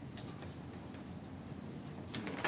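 Quiet room hum with a few faint, scattered clicks.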